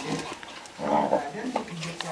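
Two dogs play-fighting, one giving a short growling vocalisation about a second in.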